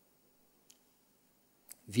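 A quiet pause in a small room, broken by two faint, sharp clicks about a second apart, then a man starts speaking right at the end.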